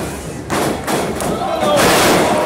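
Wrestlers' bodies hitting the canvas of a wrestling ring: a thud about half a second in and a louder one near the end, with crowd voices around them.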